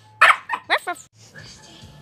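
Small Yorkshire terrier barking in three short, high yaps in the first second, begging for a ring toy held out of its reach; after that only a quieter hiss remains.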